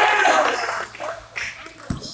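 Basketball game on a hardwood gym court. A loud burst of court noise fades within the first half-second, and a single basketball bounce on the wooden floor comes near the end.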